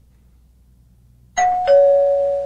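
Two-note descending ding-dong chime, the show's cue that the next listener question is coming. A higher tone sounds about two-thirds of the way in, and a lower one follows a third of a second later. Both ring on steadily.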